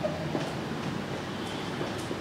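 Marker pen writing on a whiteboard: a few faint short strokes over steady room noise.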